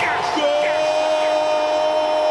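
A radio football commentator's long, drawn-out goal shout, held on one steady note that starts about half a second in.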